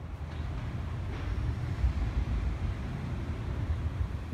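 Low, uneven rumble of outdoor city background noise, with no clear single event.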